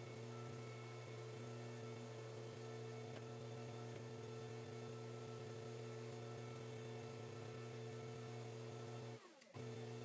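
Belt grinder running with a steady electric-motor hum while a hardened steel blade is ground against a worn 220-grit belt to take off the quench scale. The sound dips out briefly about nine seconds in.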